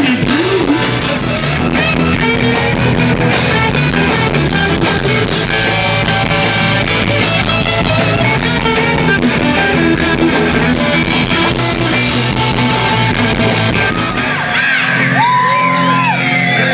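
Live rock band playing an instrumental stretch, electric guitars over bass and a steady drum beat in a large hall. Near the end, high shouts and whoops ring out over the band.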